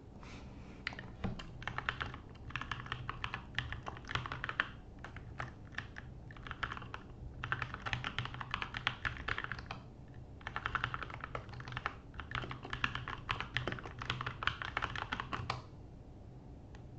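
Typing on a computer keyboard: quick runs of key clicks in several bursts with short pauses between them, stopping shortly before the end.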